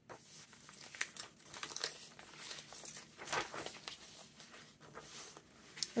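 Thick paper pages of a handmade junk journal being turned by hand: stiff, aged paper rustling and crinkling, with a few sharper crackles.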